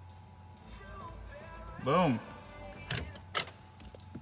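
Faint music playing over the car's stereo from an iPhone through a newly installed FM modulator, showing that the modulator works. Two sharp clicks come near the end.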